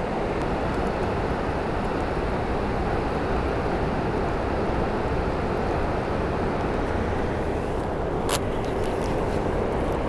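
Steady rushing of a fast-flowing river, with a single short click about eight seconds in.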